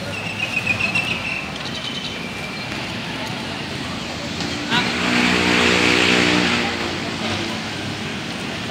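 A motor vehicle's engine runs up louder for about two seconds, starting a little under five seconds in, over steady background voices and street noise. A few short, sharp sounds come near the start.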